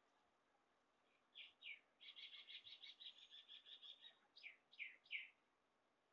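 Faint bird song: two quick downward-sliding whistled notes, then a rapid trill of about ten notes a second lasting some two seconds, ending with three more downward-sliding notes.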